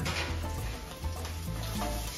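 Shrimp and cheese corn-tortilla tacos frying in oil in a frying pan, sizzling steadily, under background music with a steady bass.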